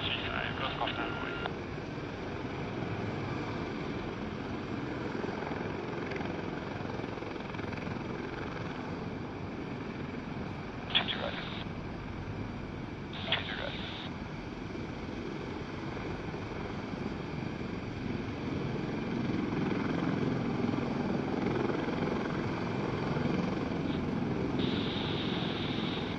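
MH-53E Sea Dragon helicopter's three turboshaft engines and rotor running steadily as it taxis, growing a little louder toward the end. Air-traffic radio chatter is heard briefly at the start and just before the end, with two short radio bursts about 11 and 13 seconds in.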